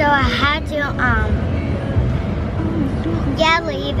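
A young girl talking in the back seat of a car, her high voice in short phrases near the start and again near the end, over the car's low steady cabin rumble.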